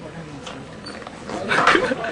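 Indistinct voices in a hall, rising to a louder outburst of voices near the end.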